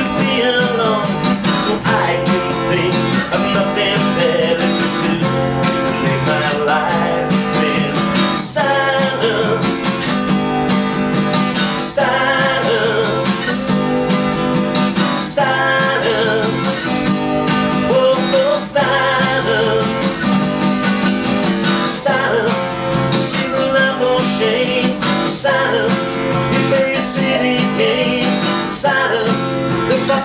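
A man singing over a strummed acoustic guitar, the chords struck in a slow steady rhythm.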